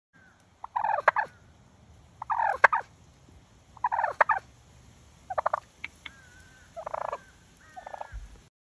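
Wild turkey tom gobbling at close range: about six rattling gobbles, roughly one every one and a half seconds.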